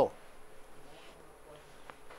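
A man's voice finishes a spoken question right at the start, then a quiet pause of room tone with a faint low buzz and a small click near the end.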